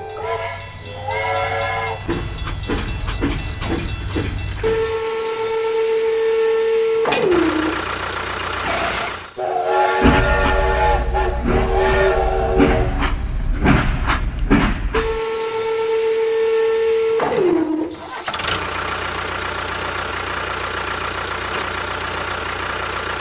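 Battery-powered toy steam train's electronic sound effects: a whistle tone held for about two seconds that drops in pitch as it ends, sounding twice, with short jingly notes between, over a steady rumble and hiss.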